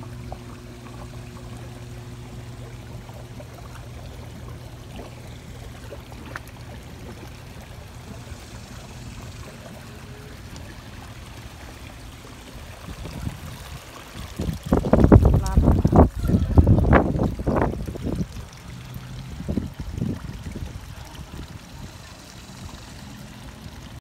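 Pond water trickling steadily. About two-thirds of the way through comes a few seconds of loud, rough noise, then it settles back to the trickle.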